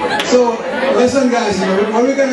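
A man talking into a hand-held microphone over a PA, with guests chattering in the background.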